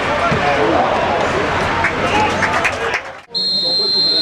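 Players and a small crowd shouting on a football pitch, broken off sharply by an edit a little over three seconds in. After the break comes a referee's whistle: one long, steady, high blast.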